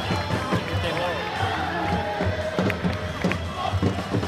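Football stadium crowd with music and singing voices carrying over a dense crowd noise, with scattered low thuds.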